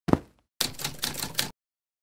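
Sound effects for an animated logo: a heavy hit just after the start, then about a second of rapid, uneven clatter that cuts off abruptly.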